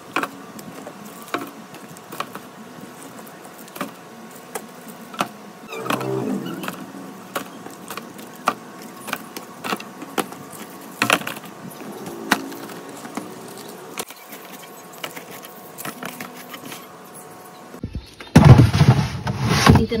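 Small cardboard drink boxes set one at a time into a clear plastic organizer bin: a string of light taps and clicks, irregularly spaced. Near the end, about two seconds of louder knocking and handling noise.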